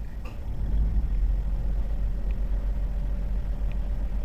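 A steady low rumble that grows louder about half a second in, with two faint ticks in the middle.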